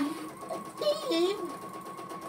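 Domestic sewing machine stitching at a steady speed, its motor humming with the rapid, even strokes of the needle, as quilt fabric and a template are guided by hand under a ruler foot with the feed dogs down.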